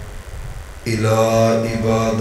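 A man chanting an Arabic sermon opening in a melodic recitation style: after a brief pause, a long steady held note begins about a second in.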